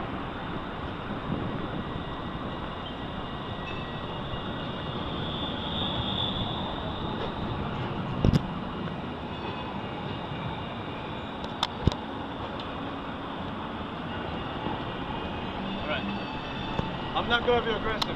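Steady city street noise with traffic, a few sharp clicks about eight and twelve seconds in, and a voice starting near the end.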